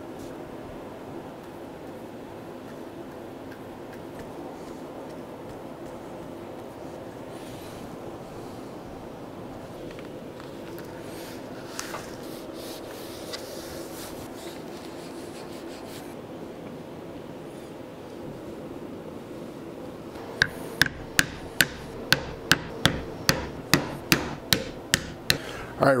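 A low steady hum, then from about twenty seconds in a regular run of sharp taps, two to three a second, from a hammer striking a leather workpiece on the bench.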